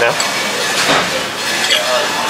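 A metal fork cutting through an omelette and clinking against a ceramic plate, with one sharp clink about a second in.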